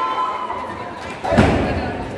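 One heavy thud about a second and a half in, typical of a wrestler's body or feet hitting the wrestling ring's canvas and boards. Shouting voices from the crowd come before and after it.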